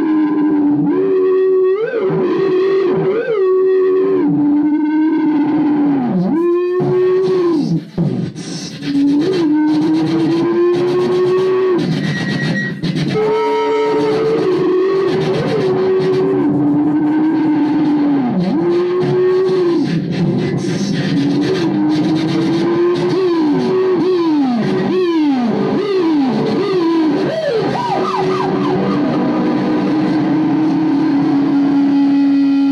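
Free-improvised electronic music: sustained pitched tones that hold, then swoop up and down in pitch, briefly cut out about eight seconds in, and break into a run of quick rising swoops near the end.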